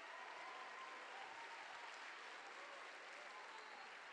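Faint, steady applause from a large audience.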